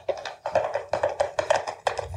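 A quick run of sharp percussive knocks, about five a second, starting abruptly.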